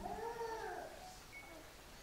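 A person's voice: one short, faint call that rises and then falls in pitch, lasting under a second.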